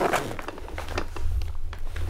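A cardboard toy box and torn wrapping paper being handled on a carpet: short scraping rasps and light taps, with a low rumble underneath.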